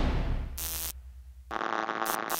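Intro sound effects: a low boom fading out, then short electronic buzzes, the longer one starting about one and a half seconds in and stuttering like a glitch.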